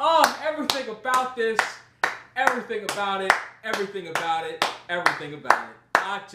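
Hands clapping repeatedly at a fairly even beat, about two or three claps a second, over a man's loud wordless vocalizing.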